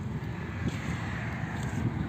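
Car engine idling steadily under the open bonnet, a low even rumble, with some wind on the microphone.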